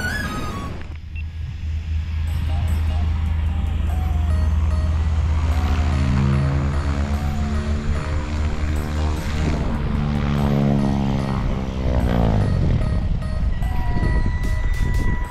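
Propeller airplane engine running. Its drone dips and rises, then falls sharply in pitch near the end as it passes.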